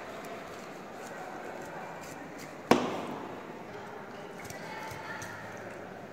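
Metal dissecting instruments scraping and ticking against dried tissue and bone over a stainless steel sink. About two-thirds of the way through there is one sharp metallic clank that rings briefly as it dies away.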